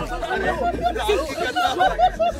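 Several people talking over one another and laughing, a jumble of overlapping voices.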